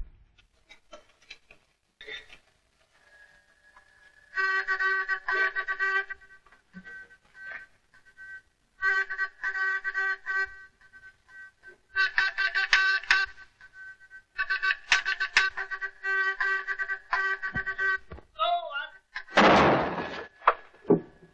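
A field telephone's Morse buzzer keyed on and off in quick groups, a steady, reedy buzz at one fixed pitch: the signaller is trying to raise posts that no longer answer. Near the end a shell bursts with a loud blast.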